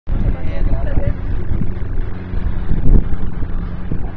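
A loud, uneven low rumble of wind on the microphone, with people's voices talking indistinctly in the background.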